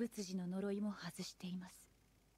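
Only speech: a woman's soft voice speaking a line of anime dialogue.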